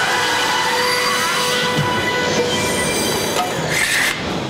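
Cartoon magic sound effect for a glowing star-metal sword's energy: a loud, shrill, many-toned electronic whine held steady, with pitches sliding about a second in and a brighter swell just before it ends.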